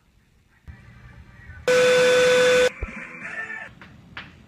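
A loud, steady buzzing tone that lasts about a second, starting a little before the middle and cutting off suddenly, over low background noise.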